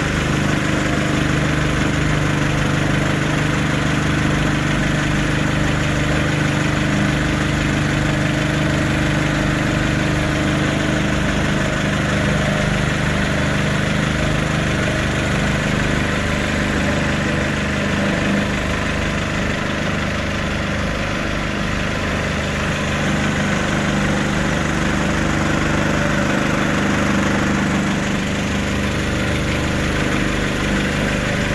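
An engine running steadily at a constant idle, with an even hum that holds throughout.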